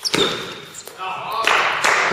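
A table tennis ball knocking sharply near the start as the rally ends, followed from about a second in by a rising wash of spectators' applause and voices.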